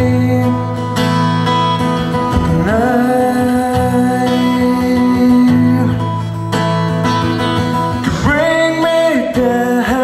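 A man singing over a strummed steel-string acoustic guitar, its chords ringing under the voice. Sung phrases slide up into long held notes about two and a half seconds in and again near the end.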